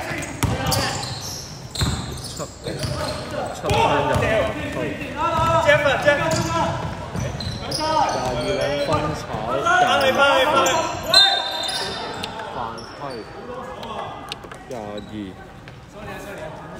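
Basketball game in a large echoing gym: a ball bouncing on the hardwood floor, with players' voices calling out during play.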